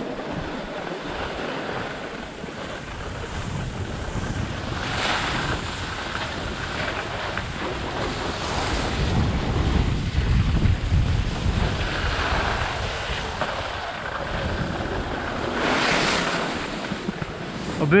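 Wind rushing over the camera microphone while sliding downhill on snow, with the hiss of edges scraping across packed snow swelling louder twice, about five seconds in and near the end. A low wind rumble builds around the middle.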